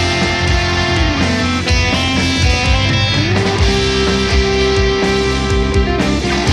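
Rock band playing the instrumental intro of a song: electric guitars over bass and drums, with no vocals yet. A held note slides down about a second in and climbs back up about three seconds in.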